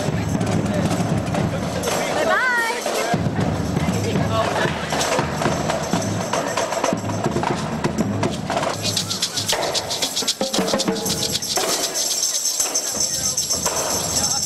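A live percussion group playing drums and hand-held percussion. About halfway through, a fast, high rattle of shakers or tambourines joins the beat.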